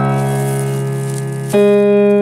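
Yamaha digital keyboard with a piano voice playing chords: a chord held and slowly fading, then a new, louder chord struck about one and a half seconds in.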